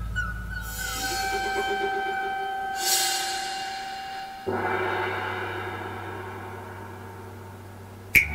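Chinese opera percussion: ringing metal tones, a crash of metal about three seconds in, then a large gong struck once about four and a half seconds in, its low hum fading slowly.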